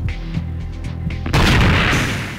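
Soundtrack music with low sustained tones, then about one and a half seconds in a sudden loud rushing boom that slowly fades: a sound effect for the animated Bloodhound SSC rocket car going supersonic.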